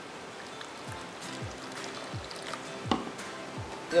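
Water pouring into a glass bowl of chopped cucumber, over background music with a regular beat of falling low thuds. There is a single sharp knock about three seconds in.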